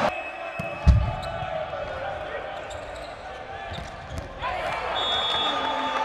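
A single heavy thud of a volleyball hitting the court, about a second in, over the murmur of a sports-hall crowd. The crowd noise swells again after about four and a half seconds.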